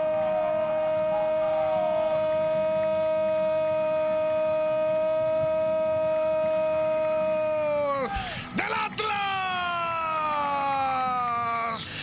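A Spanish-language football commentator's long held goal cry, one steady shouted note for about eight seconds. After a brief break for breath comes a second held cry that slowly falls in pitch.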